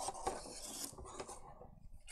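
Faint rustling and light clinks of things being handled on a tabletop as a roll of gummed paper tape is picked up, dying away in the second half.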